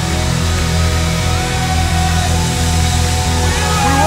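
Live worship band playing a loud, steady instrumental passage: held chords over a constant low bass drone, with a melodic line sliding up in pitch about a second in.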